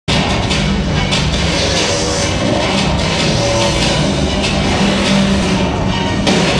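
Metalcore band playing live at full volume, heard from the crowd: a dense, unbroken wall of distorted guitars and drums that cuts in abruptly mid-song.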